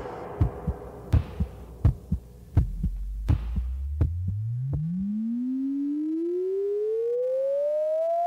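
Synthesized sound effect in a stage dance track: a string of sharp, irregular hits, then a single pure electronic tone that starts low about two and a half seconds in and glides steadily upward in pitch, building toward the music's return.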